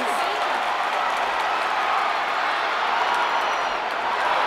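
Steady crowd noise: many voices talking and calling at once, at an even level.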